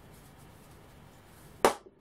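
A single sharp smack about one and a half seconds in: a toy dart shot striking the hand-held paper challenge wheel used as a target.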